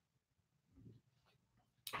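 Near silence, with one faint, short sound a little before halfway through.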